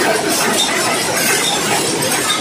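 Rapier power loom running: a loud, steady, dense mechanical clatter of many small metallic clicks.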